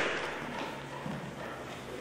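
The last of an audience's applause dying away in a large hall, giving way to faint room noise.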